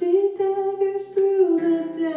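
Female vocal duo singing slow, long held notes with acoustic guitar underneath; the melody changes pitch a few times in the two seconds.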